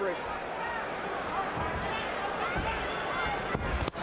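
Boxing-arena crowd noise: a dense hum of many voices. A few dull low thuds come in the second half.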